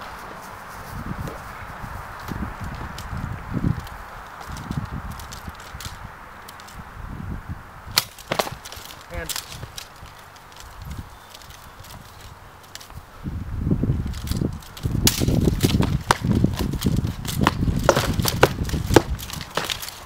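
Sword-and-shield sparring between two armoured fighters: soft thuds of footsteps on grass, a few sharp knocks about eight seconds in, then a rapid flurry of cracks and clacks of swords striking round wooden shields and armour from about fourteen seconds, with scuffling footfalls.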